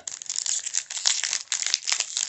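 The shiny foil wrapper of a Panini Mosaic soccer card pack crinkling and tearing as it is pulled open by hand: a dense, continuous run of crackles.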